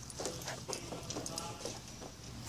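Faint, irregular footsteps on checkered garage floor tiles, with a faint voice in the background.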